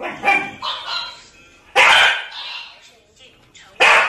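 A dog barking: two short, loud barks about two seconds apart, one near the middle and one near the end, with softer pitched calls before and between them.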